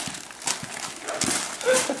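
Gift wrapping paper crinkling and rustling in irregular bursts as it is handled. A short voiced sound, likely a laugh, comes near the end.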